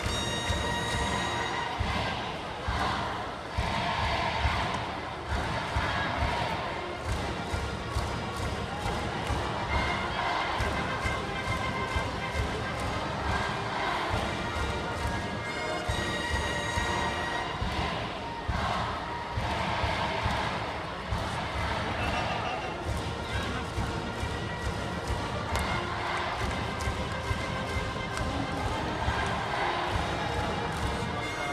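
High-school baseball cheering section in the stands: a brass band playing a cheer song over a steady bass-drum beat, with many voices chanting along.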